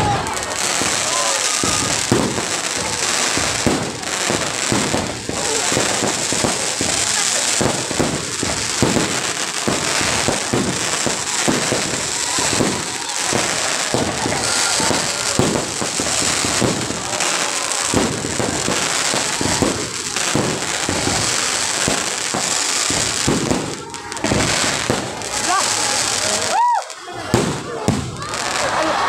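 Aerial fireworks going off in a dense, continuous barrage of bangs and crackles, easing briefly a few seconds before the end.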